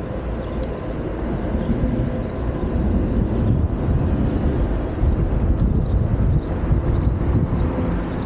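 Wind rumbling on a helmet-mounted camera's microphone while cycling, unsteady and a little louder after the first couple of seconds, with a few faint high chirps near the end.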